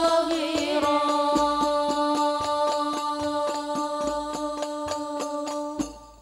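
A singing voice holding one long note over musical accompaniment with a quick, steady beat. Both stop suddenly shortly before the end.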